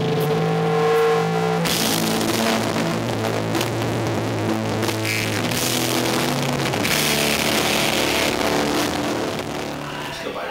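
Rock band playing live: electric guitars and drums. A held guitar chord opens, then the full kit with cymbals crashes in under two seconds in and the band plays on loudly.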